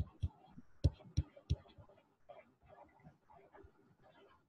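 Stylus pen knocking against a tablet screen during handwriting: five short, dull knocks in the first second and a half, then only faint scratchy sounds.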